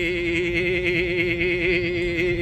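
A man's voice holding one long sung note with a steady vibrato.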